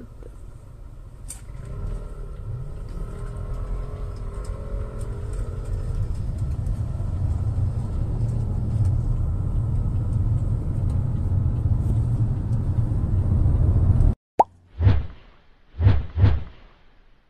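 Low road rumble from inside a moving vehicle, growing steadily louder as it gathers speed, then cut off abruptly near the end and followed by a few short whooshing pop sound effects.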